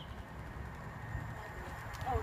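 Quiet station background with a steady low rumble as a High Speed Train approaches in the distance, and a faint steady high tone coming in about halfway.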